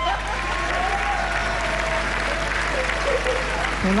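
Studio audience applauding steadily, with a few voices mixed in.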